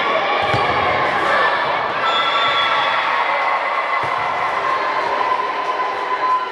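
Crowd and players' voices in a busy sports hall, with sharp hits of a volleyball about half a second in and again near four seconds.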